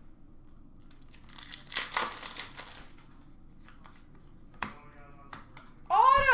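Foil trading-card pack wrapper crinkling and tearing open for about a second and a half, followed by a few light taps near the end.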